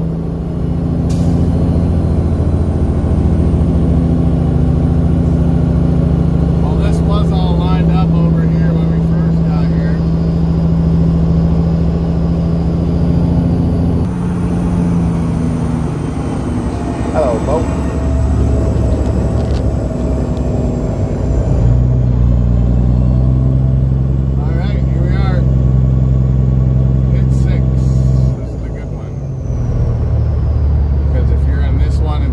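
Heavy truck's Cat diesel engine running at low speed, heard from inside the cab as the truck creeps along. Its note changes a few times, with a short drop in loudness near the end.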